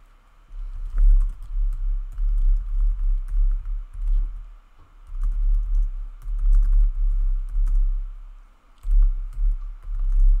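Typing on a computer keyboard: a quick run of keystrokes that come through mostly as dull low thuds with faint clicks, pausing briefly twice.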